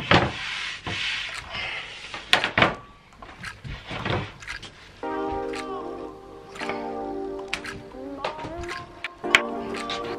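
Knocks and thunks of a wooden skateboard deck and a wooden screen-printing frame being set down and shifted on a bench. Background music comes in about halfway through.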